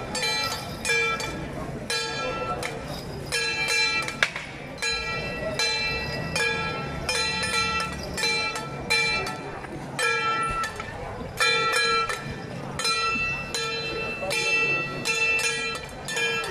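Metal percussion accompanying a Ba Jia Jiang troupe's performance: gongs and cymbals struck in quick clusters over and over, each stroke ringing on. One sharp crack stands out about four seconds in.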